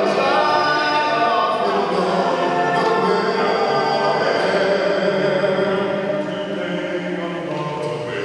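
Men's a cappella group of eight voices singing in harmony, with held chords, growing a little softer near the end.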